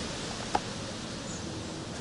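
Steady background hiss of outdoor ambience, with a single sharp click about half a second in.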